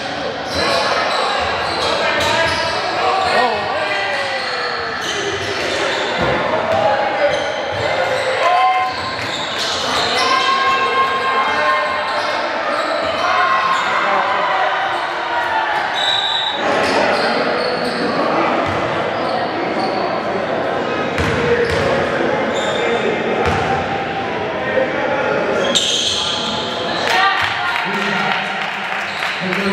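A basketball bouncing again and again on a gym floor during live play, with shoe squeaks and players' and spectators' shouts echoing in a large hall.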